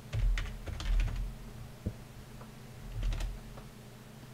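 Computer keyboard being typed on in short bursts: a quick run of keystrokes at the start, another about a second in, a single key press near two seconds, and a last burst about three seconds in.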